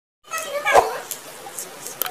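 A kitten's short meow, with a soft thump as it ends, followed by faint scuffling.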